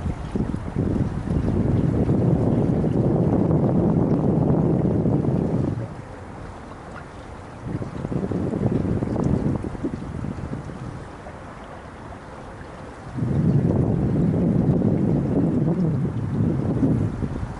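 Wind buffeting a camera microphone on a small sailboat. It comes in three gusts of low rumble: a long one starting within the first second, a shorter one around the middle, and another in the last few seconds.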